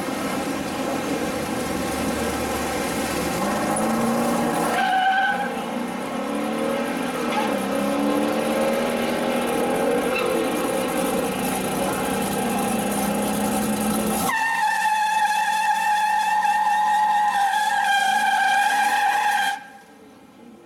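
A 1974 Pontiac Trans Am SD455's 455 V8 running loud at the drag strip. About 14 seconds in it switches to a steady, high-pitched tire squeal over the engine for about five seconds: a burnout before the launch. The squeal cuts off suddenly near the end.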